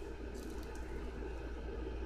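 Low steady hum under a faint even hiss, with a few soft ticks about half a second in: background room noise.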